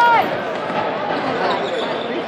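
Arena crowd chatter and shouting, with a basketball being dribbled on a hardwood court. A loud held shout ends just after the start.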